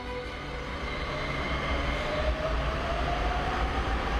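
Subway train pulling away: a rising electric motor whine over a rumble that grows louder.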